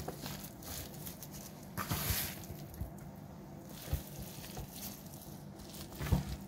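Gloved hands scooping and dropping wet, spice-coated cabbage and carp pieces into a plastic container: soft, intermittent handling noises, with a louder burst about two seconds in and a light knock near four seconds.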